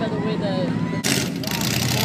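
Off-road truck engines running, with a louder rushing noise that comes in suddenly about halfway through.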